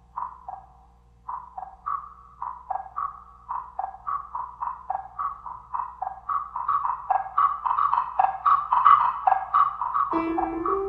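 Wooden tone blocks struck with mallets in a quick rhythmic pattern that alternates between two pitches. The strikes grow denser and louder toward the end.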